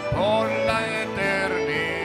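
Live worship band music: acoustic guitar, keyboard and drum kit playing, with a singing voice carrying a gliding melody.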